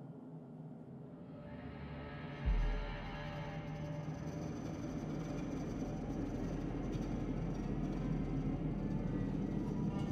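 Horror film score: a dark, low rumbling drone that swells steadily, with a deep boom about two and a half seconds in.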